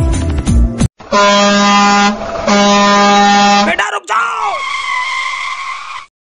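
Ashok Leyland truck's air horn blown in two long blasts, then a short squeal falling in pitch and a steadier squeal that cuts off suddenly near the end. Background music plays briefly before the horn.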